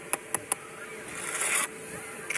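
Bricklayer's trowel working a brick and mortar: three quick sharp taps in the first half-second, then a short scrape about a second in.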